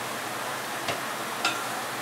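Steady sizzle of food frying in a pan on the stove, with two light clicks about a second in and half a second apart, the second ringing briefly: a spatula knocking against the metal skillet while sweet potato noodles are served onto a plate.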